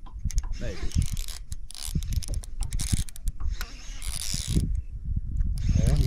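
Baitcasting reel being cranked while a fish is on the line, its gears whirring and clicking in quick repeated strokes.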